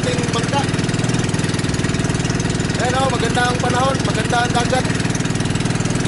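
Small boat's engine running steadily at cruising speed, an even rapid firing rhythm, as the outrigger bangka moves through calm water.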